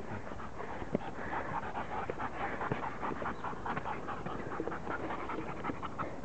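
Dog panting quickly and steadily while walking on a leash.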